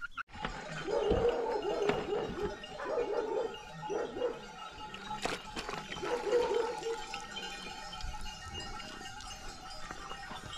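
Wet goat skins squelching as they are kneaded by hand in a basin of liquid, with livestock calling in the background through the first seven seconds or so.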